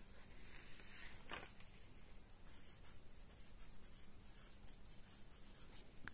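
Faint scratching of a word being handwritten on a workbook page: one stroke a little over a second in, then a quick run of short strokes through the second half.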